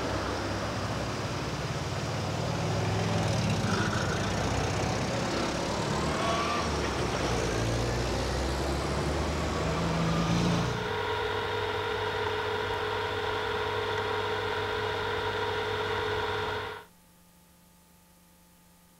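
Street traffic: a steady wash of road noise with low engine rumble from passing cars. About ten seconds in, it gives way to a steady hum of several held tones, which cuts off suddenly near the end.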